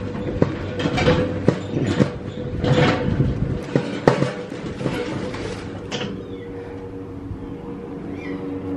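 A steady mechanical hum, with a string of short rustling and scuffing noises over it.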